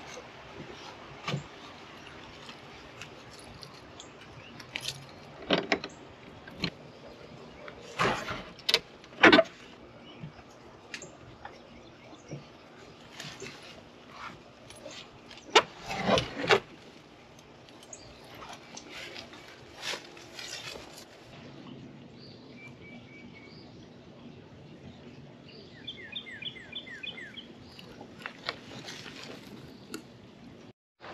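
Keys jangling and scattered knocks, rattles and scrapes as a shed door is opened and shut and a mountain bike is handled, the loudest knocks about eight and fifteen seconds in. Birds chirp in short runs of notes near the end.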